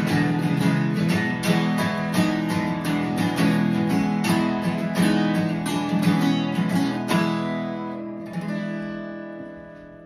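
Two guitars strumming a driving rhythm together, a stroke about every third of a second. About seven seconds in they stop on a final chord that rings and fades, with one more light strum near the end.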